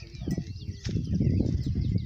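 Small birds chirping faintly in short, scattered calls over a steady low rumble.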